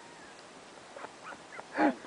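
Dobermann making short whining calls: a few faint ones from about halfway through, then a louder one near the end.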